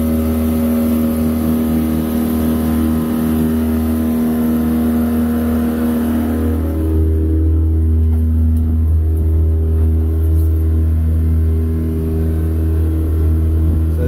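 A boat's outboard motor running steadily, with a change in its sound about halfway through.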